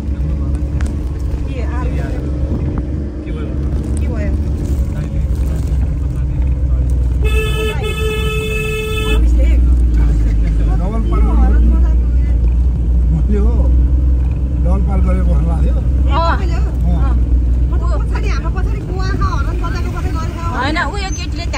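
Inside a car's cabin, the engine and road rumble of a car driving, louder from about halfway. A vehicle horn sounds once, about seven seconds in, holding one steady tone for nearly two seconds.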